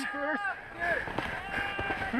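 Faint voices of people calling on the slope, with a few light knocks scattered through.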